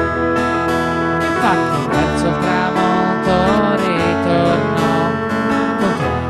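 Live instrumental passage of a folk song: a steadily strummed acoustic guitar over held keyboard chords, with a lead line that slides up and down in pitch a few times.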